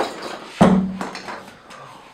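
A light click, then a louder sharp knock about half a second in, as a plastic cutting mat is lifted and propped against a cardboard box as a toy-car ramp.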